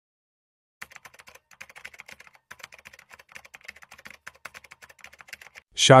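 Quick, irregular light clicks, several a second, like typing on a keyboard, starting about a second in and stopping just before the end.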